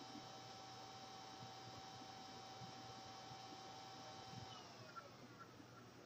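Faint steady whine of an electric motor that winds down about four and a half seconds in, its pitch falling as it coasts to a stop.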